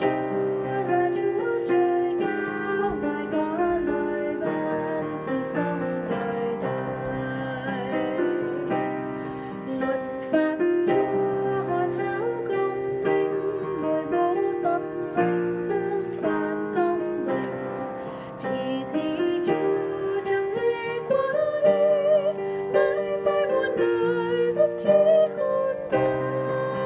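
A woman singing the men's harmony line of a hymn while accompanying herself on a digital piano, sung over sustained chords at a slow, steady pace.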